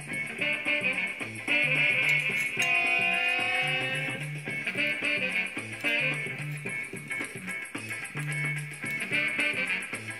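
Instrumental background music with a short repeating bass pattern under a melody.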